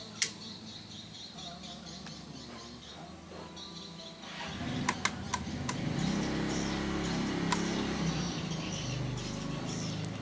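Sharp clicks of toggle switches and an ignition key on a mini electric car's switch panel: one click right at the start and a quick cluster of three or four about five seconds in. From about four seconds in, a steady low hum sets in under the clicks.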